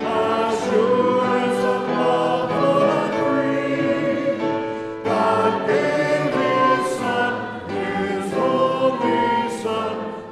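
Many voices singing a hymn together, in sustained phrases with a short break about halfway through.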